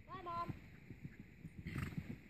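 A horse loping on soft arena dirt, its hoofbeats coming as dull uneven thuds. A short high call rises and then holds in the first half-second, and a brief breathy rush of air comes near the end.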